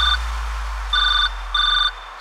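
Telephone ringtone sample in a DJ remix: short electronic beeps come twice, about a second in and again near the end, over a held deep bass note.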